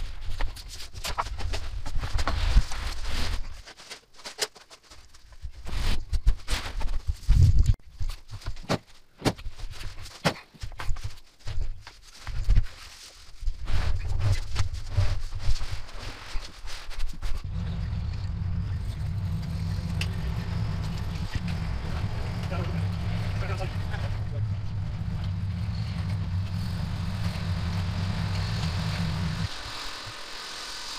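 Knocks, scrapes and heavy thumps as a cardboard-wrapped tabletop is handled and slid into a pickup truck's bed. About seventeen seconds in, a steady engine rumble takes over and runs until it cuts off shortly before the end.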